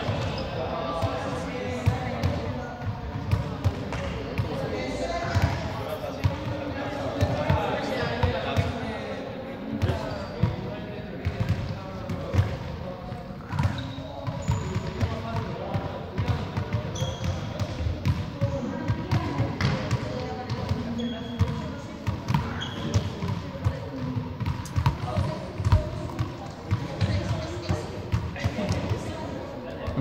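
Balls bouncing on a sports hall floor, many irregular thuds, with several people's voices carrying through the hall's echo.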